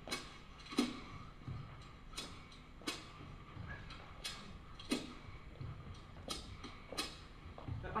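Isolated drum track from a dance-orchestra recording played on its own, sounding clear: a sharp drum hit about every three-quarters of a second with softer low beats between, keeping a steady dance tempo. This is the beat that sets the dancers' timing.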